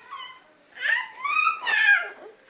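Baby squealing: a short high-pitched call near the start, then two louder squeals in the second half that rise in pitch.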